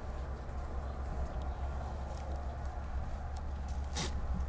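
Quiet handling sounds of a plant's root ball being set into moss and potting soil inside a wire birdcage: faint rustling and a few light ticks, over a low steady hum.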